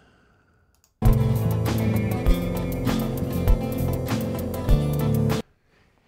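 A short excerpt of a music mix played back through the Airwindows PurestConsole3 console-emulation plugin, a demonstration of how the plugin sounds. It starts about a second in, runs for about four and a half seconds and cuts off abruptly.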